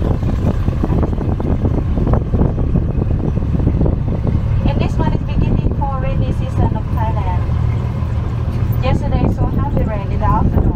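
Open-sided tour tram running along a farm track: a steady low rumble from the vehicle and its tyres, with frequent small knocks and rattles in the first half. Brief faint voices come in about halfway and again near the end.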